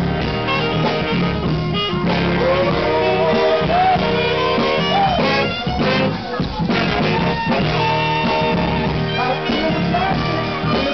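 Live funk band playing, led by a horn section of saxophones, trumpets and trombone over bass, drums and keyboard, with a few sliding bends in the melody line.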